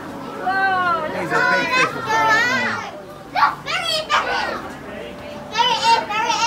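Young children's high-pitched, excited voices: calls and exclamations with no clear words, coming in a few spells with short pauses between.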